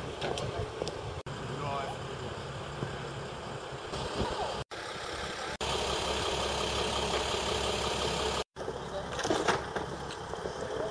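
Ambulance engine idling with a steady low hum, with indistinct voices over it; the sound drops out briefly a few times.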